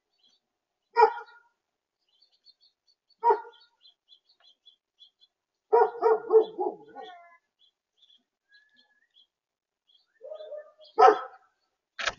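Red-bellied woodpecker calling close to the microphone: single short calls about a second in and after three seconds, a quick run of repeated notes around the middle, and two more calls near the end. Faint high chirps of small birds sound in between.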